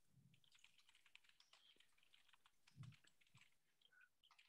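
Faint computer keyboard typing: a quick, irregular run of keystrokes as short commands are entered, with a soft low thump just after the start and a louder one near three seconds in.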